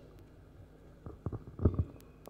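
A handheld microphone being handled and moved, giving a few short, low, muffled thumps and knocks in the second half after a quiet start.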